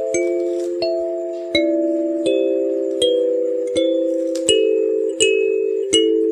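Kalimba playing a slow melody, one plucked note about every three-quarters of a second, each note ringing on under the next.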